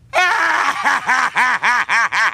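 A cartoon robot character's voice laughing hard, a long run of rapid "ha" pulses at about five a second.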